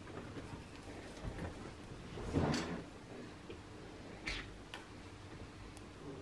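Cockatiel nibbling a raw carrot chunk wedged through the cage bars: faint, scattered beak clicks and small crunches, with one louder crunch about two and a half seconds in.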